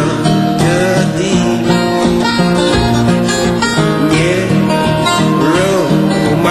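Fingerpicked acoustic guitar playing a steady pattern of bass notes under a melody line.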